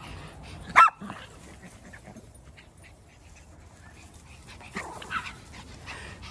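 A dog barks once loudly a little under a second in, with quieter barks near the end.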